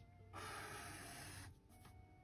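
One faint stroke of a Sharpie fine point felt-tip marker across sketchbook paper, a soft rasp of about a second that stops well before the end.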